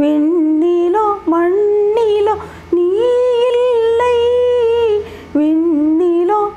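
A woman singing a Tamil devotional song unaccompanied, in sustained phrases with short breaks for breath and one long held note in the middle.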